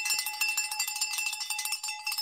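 A bell ringing with a rapid rattle, holding several steady high pitches, and cutting off suddenly near the end.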